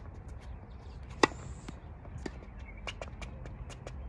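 Tennis ball struck by a racket: one sharp pop about a second in, the loudest sound, with fainter ticks and knocks around it.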